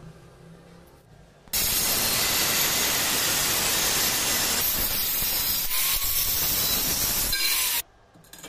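Angle grinder with a thin cut-off disc cutting through a polished stainless steel pipe: a loud, steady grinding hiss that starts abruptly about a second and a half in and cuts off abruptly near the end.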